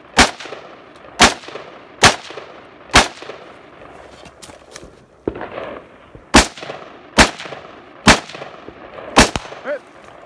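Rifle fired in single, deliberate shots, about one a second: four shots, a pause of about three seconds, then four more. Each shot trails off in a decaying echo.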